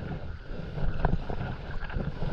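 Wind rumbling on the microphone of a camera worn by a stand-up paddleboarder, with the splash and swish of the paddle blade pulling through the sea.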